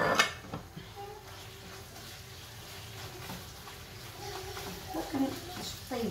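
A glass plate clatters down onto the countertop right at the start, followed by quieter kitchen noise of a wooden spoon stirring chicken in a frying pan.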